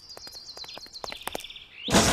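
Small birds chirping in a quick series of short, high chirps, a cartoon soundtrack's street-ambience effect. A sudden loud burst of sound cuts in just before the end.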